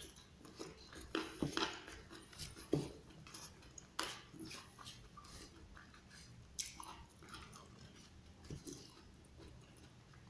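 A person chewing a mouthful of raw leunca (black nightshade) berries and rice in irregular bites, loudest in the first few seconds.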